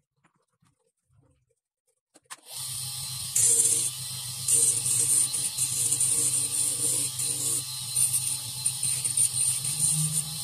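A dental lab bench motor with a chuck and mandrel starts up about two and a half seconds in and runs with a steady low hum, spinning a small grinding disc. The work is pressed against the disc in short spells, each adding a louder high grinding hiss.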